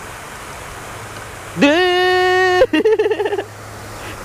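A man's long, held, high vocal cry about one and a half seconds in, breaking into laughter, over the steady rush of the pond's spray fountain.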